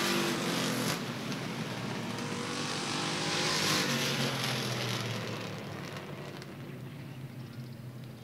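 Race cars running around a short paved oval on the cool-down lap after the finish; one passes close about four seconds in, its sound swelling and then fading away.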